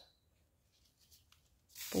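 Faint handling of ribbon and needle, then near the end a short rasp of sewing thread being drawn through grosgrain ribbon as the basting stitch is pulled.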